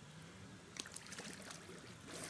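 A bather splashing as he ducks under in a cold river; a run of short, faint splashes starts just under a second in.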